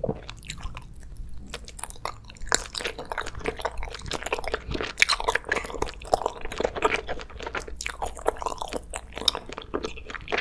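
Close-up chewing of an eyeball gummy (Glotzer-style gummy candy): a dense run of small clicks and smacks from the mouth.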